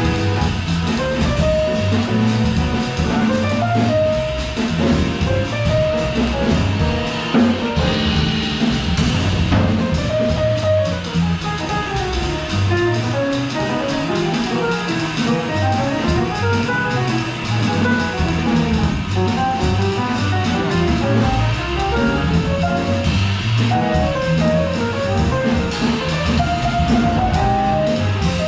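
Live jazz from a small band: a drum kit with ride cymbals keeping time under a walking upright double bass, with moving melodic lines above, playing without a break.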